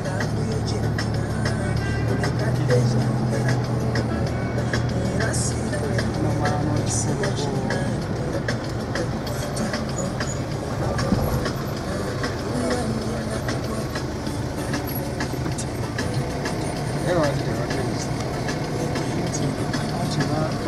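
Car driving, heard from inside the cabin: a steady low engine and road hum, with voices and music mixed in.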